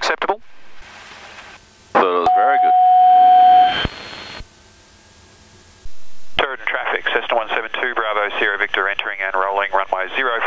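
Cockpit headset intercom and radio audio: a brief voice, then a loud steady tone held for about a second and a half, and from about six seconds in, continuous radio speech with a thin, telephone-like sound.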